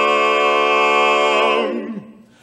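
Barbershop quartet of four unaccompanied men's voices holding one long, loud chord. Near the end the chord wavers, slides down and dies away.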